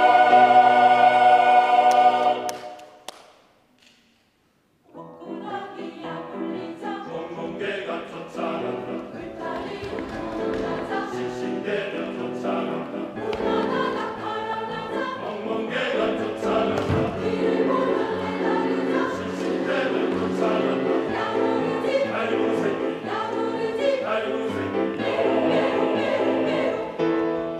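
Mixed choir singing: a loud held chord cuts off about two and a half seconds in, and after a short silence the choir comes back in with a lively, rhythmic passage that grows fuller.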